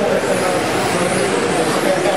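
Several electric 1/10-scale RC touring cars with 10.5-turn brushless motors and rubber tyres running at speed on the track: a steady whine and rush of motors and tyres, with voices in the background.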